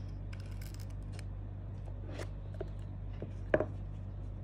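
A small cardboard box being cut open with a blade along its edge, a quick run of crisp little snips, then softer scraping as it is handled and one sharp click near the end. A steady low hum runs underneath.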